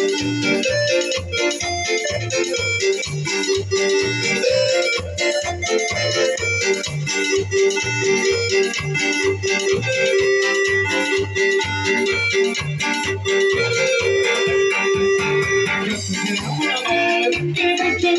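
Live cumbia music: an electronic keyboard carries the melody in sustained, organ-like tones over a steady bass beat of about two to three pulses a second.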